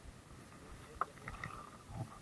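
Small wooden outrigger boat on calm water: faint sounds of the hull and water, with one sharp knock about a second in.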